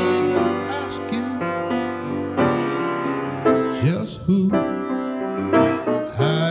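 Slow gospel solo: sustained keyboard chords accompany a man's singing voice, which slides through a held note about four seconds in.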